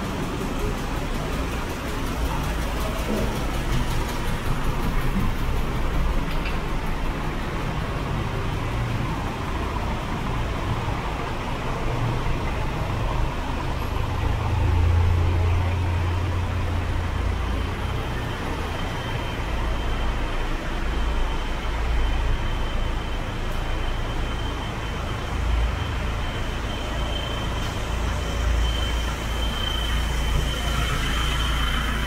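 Steady city street traffic: vehicle engines and tyres rumbling without a break, with a louder low engine drone as a vehicle passes close about halfway through. A thin, steady high-pitched whine comes in about two-thirds of the way through and holds to the end.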